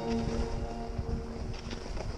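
Wind buffeting a body-worn camera's microphone while skiing down a snowy track, with a few short crunches of skis and poles in the snow about one and a half seconds in. The tail of the background music fades out in the first half.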